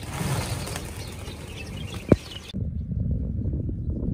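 A flock of small birds taking off together in a rush of wingbeats, with scattered high chirps and a single sharp click about two seconds in. It cuts off abruptly and gives way to a low steady rumble.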